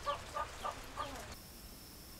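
Chickens clucking faintly in the background, a few short calls in the first second or so. Then the sound cuts to a quiet background with a faint steady high whine.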